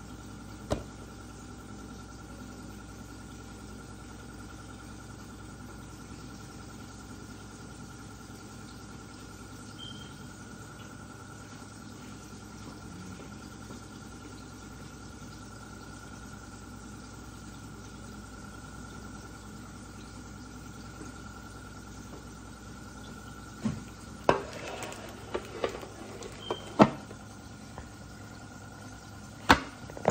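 An old refrigerator running with a steady hum and a faint high whine, the noise the owner apologises for. Near the end come several sharp knocks and clatters.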